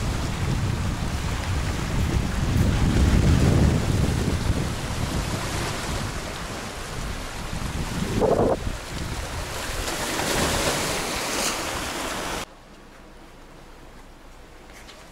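Small sea waves washing and splashing against shoreline rocks, with wind buffeting the microphone in a low rumble. Near the end the sound drops suddenly to a quiet background.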